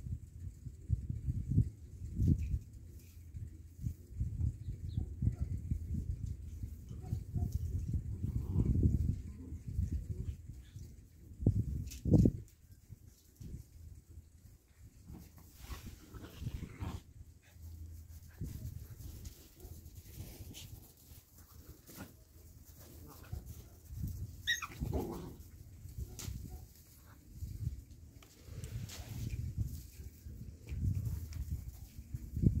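Puppies play-fighting on gravel: irregular scuffling and crunching of stones, with one sharp thump about twelve seconds in. Near the end one puppy gives a short, high yelp that falls in pitch.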